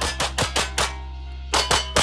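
Rapid pistol fire: a quick string of about four shots, a short pause, then another string of about four, over a steady music bed.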